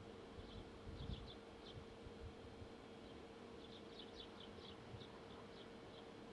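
Faint, steady hum of a distant truck-mounted hydraulic loader crane at work.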